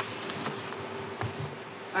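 Room tone with a steady buzzing hum held on one pitch; a voice starts speaking at the very end.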